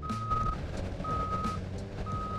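Backup alarm of a reversing vehicle, a steady single-tone beep about half a second long repeating once a second, over a steady low machinery hum.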